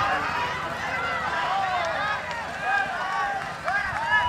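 Several people at a football match shouting and calling out, their voices overlapping throughout with no clear words.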